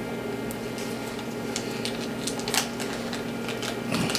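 Paper wrapper of a stick of butter crinkling and tearing in short scattered crackles as it is peeled off by hand, over a steady low hum.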